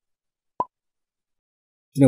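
Dead silence broken by a single short, soft pop about half a second in.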